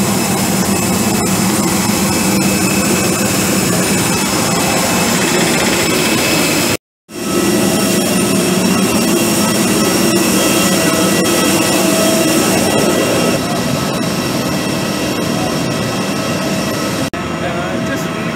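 Jet airliner turbines running on the airport apron: a loud, even rush with several high whining tones held steady over it. The sound cuts out for a moment about seven seconds in and drops a little in level near the end.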